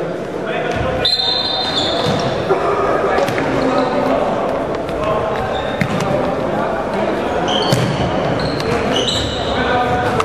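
Indoor futsal game in a reverberant sports hall: a steady jumble of players' and spectators' voices, with the ball being kicked and bouncing on the wooden floor. Several short high squeaks, typical of shoe soles on the floor, come about a second in and again near the end.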